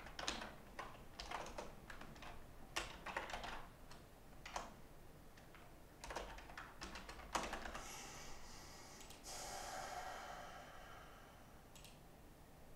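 Typing on a computer keyboard in quick irregular bursts of keystrokes, followed by a softer noise lasting about three seconds and a single click near the end.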